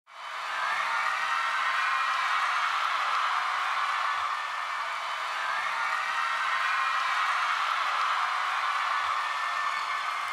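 A large hall audience applauding and cheering, fading in at the very start and then holding steady.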